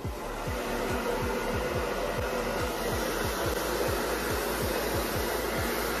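Handheld hair dryer running steadily as it blows wet hair dry, cutting in suddenly at the start, with a regular low pulsing underneath.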